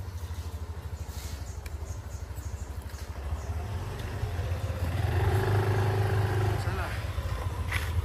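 Yamaha NMAX scooter's single-cylinder engine running at low speed as it rides up close. It grows louder for a second or two about five seconds in, with a steady hum over the firing pulse.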